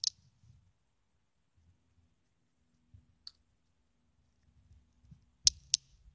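A few short, sharp clicks over quiet room tone: one right at the start, two faint ones around three seconds in, and the loudest pair in quick succession near the end.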